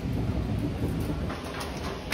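Low rumbling handling noise from a hand-held phone being carried while walking, then a few light clicks in the second half.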